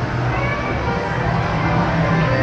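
Casino slot floor din: electronic tones and jingles from slot machines over background voices and a steady low hum.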